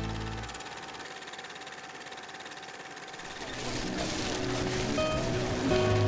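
Background music: an accordion tune ends within the first second, leaving a few seconds of faint hiss. Another piece of music then fades in from about halfway through and grows louder.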